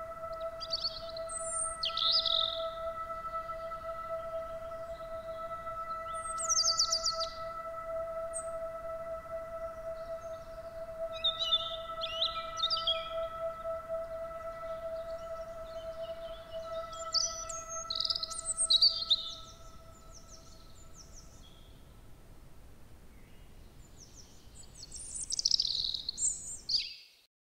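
Songbirds chirping and singing in short scattered phrases, over a steady held tone that fades out about two-thirds of the way through.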